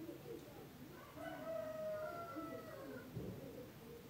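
A single drawn-out bird call, a little under two seconds long, starting about a second in, with its pitch rising slightly and falling back, heard faintly over quiet room noise.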